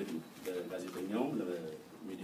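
A man speaking Amharic into a podium microphone, his voice running on without a pause.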